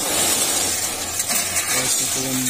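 Gravel being shovelled off a truck bed, stones pouring and clattering over the lowered metal side onto the pile below in a steady rushing rattle.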